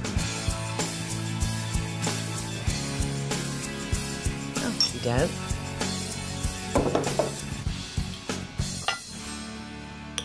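Metal serving spoon clinking against a glass bowl and glasses as fruit salad is spooned out, with many short irregular clinks over steady background music.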